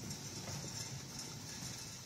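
Wheeled hospital stretcher being pushed along a corridor floor, its wheels and metal frame rattling and knocking unevenly over a steady hiss.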